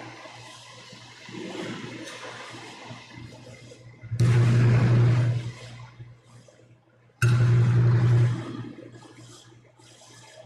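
Two bursts of rustling and handling noise on the priest's close microphone, about four and seven seconds in, each lasting a second or so with a low hum, as his vestments brush the mic while he moves about the altar.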